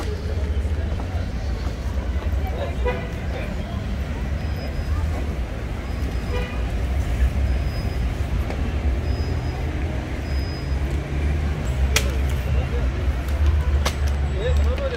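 Outdoor street background: a steady low rumble of traffic with faint voices. For several seconds in the middle, a short high beep repeats about once a second, and a couple of sharp clicks come near the end.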